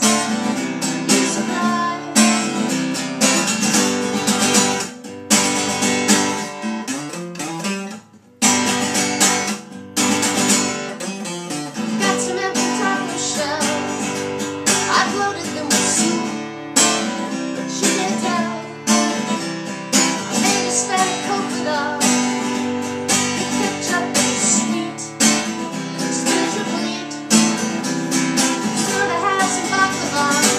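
A woman sings while strumming an acoustic guitar, with a brief break about eight seconds in.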